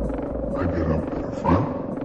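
Dark minimal techno track with a low, growling processed voice sample over layered synths; the deep bass pulse drops out shortly after the start.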